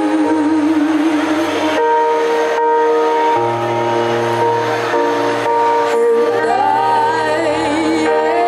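A young girl singing live into a handheld microphone over an instrumental backing of held chords. The vocal line wavers at the start, gives way to the steady chords through the middle, and comes back rising to a higher line near the end.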